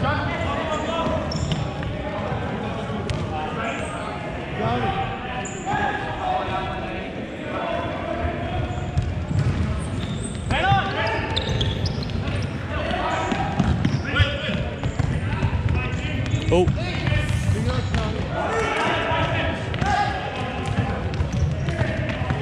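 Futsal ball being kicked and bouncing on a hardwood sports-hall floor in a large hall, with repeated short thuds throughout. Indistinct voices of players calling out run through it.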